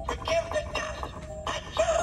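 Pan Asian Creations animated half-skeleton-in-frame Halloween prop playing its recorded soundtrack through its small speaker: eerie held music with a processed, spooky voice over it.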